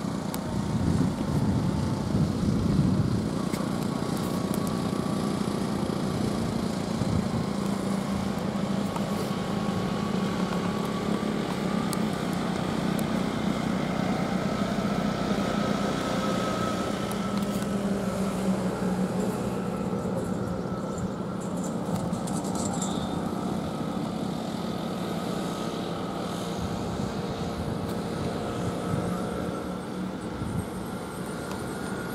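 Road traffic engines, mainly goods trucks, running steadily as they pass: a continuous engine drone with faint whining tones that slowly shift in pitch, a little louder in the first few seconds.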